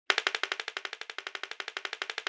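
A long row of dominoes toppling one after another: a rapid, even run of clicks, about fourteen a second, loudest at the start and then steady.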